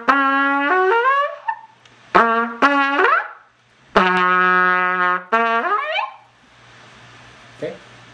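Trumpet playing three doits: each a held note followed by an upward glissando made with the valves pressed halfway down and the pitch lipped up. The third starts on a lower, longer-held note before its climb.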